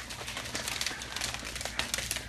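A plastic shaker bottle of water and drink powder shaken hard to mix it: a fast, irregular run of rattling and sloshing.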